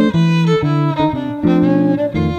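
Violin playing a melodic swing line over the steady chords of an archtop guitar in an instrumental passage with no singing.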